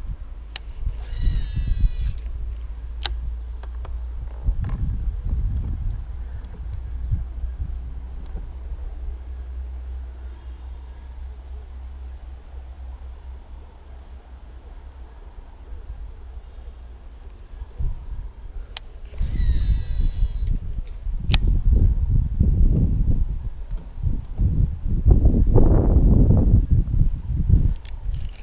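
Baitcasting reel casting twice: the spool whirs briefly as line pays out about a second in and again near the twenty-second mark. Sharp clicks from the reel come between the casts, under a steady low rumble.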